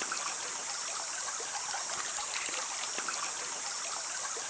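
Rainforest ambience: a steady high-pitched insect drone over an even hiss of running water, with a few faint ticks.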